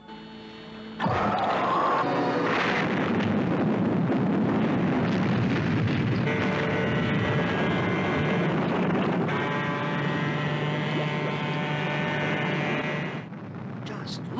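A sudden explosion about a second in, followed by a long, steady rumble that runs on for about twelve seconds. Music with held chords comes in over the rumble about six seconds in.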